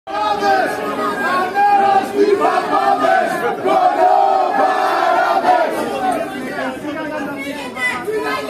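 A crowd of demonstrators shouting a slogan together in unison, loud, easing off slightly after about six seconds.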